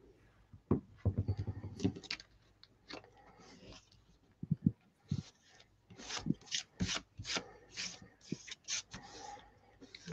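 Fingers rubbing and pressing paper and card down onto a freshly glued book spine to make it stick: a series of short, irregular rubbing and scraping strokes.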